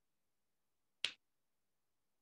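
A single sharp click about a second in, against near silence.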